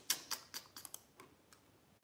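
Faint, irregular clicking at a computer while a design file is opened, several quick clicks in the first second, then fewer and quieter ones.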